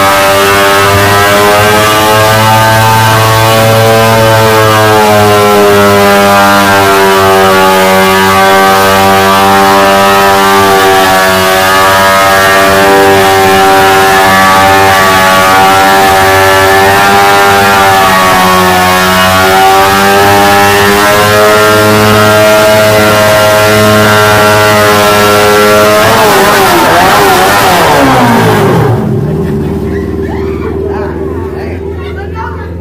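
Sport motorcycle engine held at high revs during a stationary rear-tyre burnout, running steadily with small dips in pitch. Near the end the revs swing down and back up before the sound cuts off suddenly.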